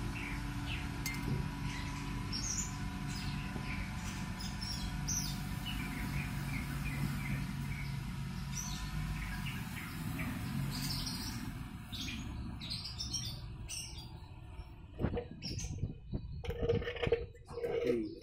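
Small birds chirping repeatedly, short high calls over a low steady hum that fades out about two-thirds of the way through. Near the end there are a few sharp knocks.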